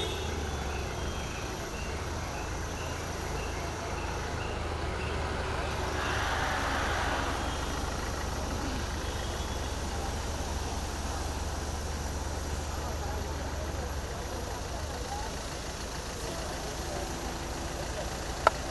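A slow-moving truck's engine running steadily at walking pace, a low hum under general street noise and indistinct crowd voices.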